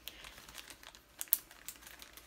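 Packaging crinkling and rustling as it is handled, with scattered small clicks and one sharper click a little past halfway.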